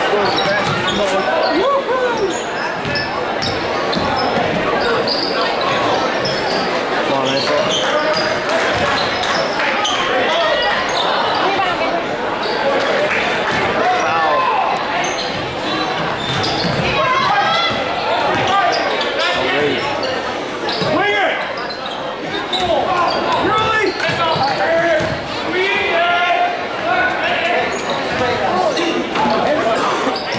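Spectators' voices talking and calling out in a gymnasium during a basketball game, with a basketball bouncing on the hardwood court as play runs up and down the floor.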